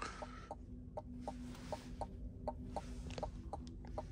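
Turn-signal indicator ticking steadily, about four ticks a second, in an electric car's cabin over a low steady hum, with a brief tone right at the start.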